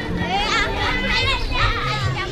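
A group of children's voices chattering and calling out over one another, many voices overlapping throughout.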